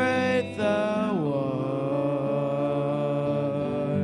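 Male voices singing a slow worship song over a small band. A brief pause about half a second in, then the melody slides down and settles into one long held note.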